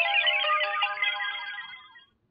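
Short sparkly chime jingle of a logo sting: a rapid cascade of high bell-like notes over a few held tones that step in pitch, fading out near the end.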